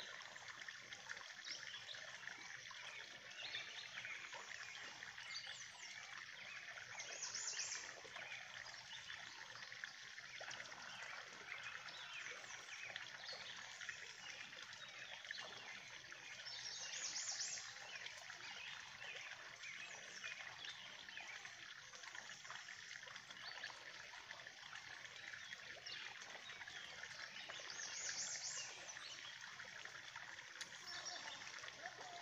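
Steady trickle of water from a drain pipe spilling into a pond, with birds chirping throughout. Three brief high bursts stand out, about ten seconds apart.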